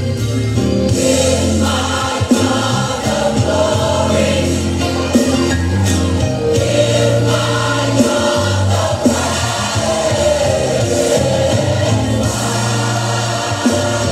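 Gospel music: a choir singing over instrumental accompaniment with sustained bass notes.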